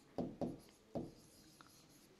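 A pen writing on an interactive whiteboard screen: three short strokes in about the first second.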